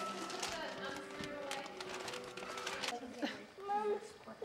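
Indistinct voices, with many short clicks and knocks through the first three seconds.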